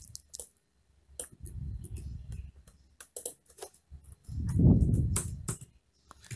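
Scattered computer keyboard keystrokes and clicks. There are two stretches of low, muffled rumble: one about a second and a half in, and a louder one around four and a half seconds in.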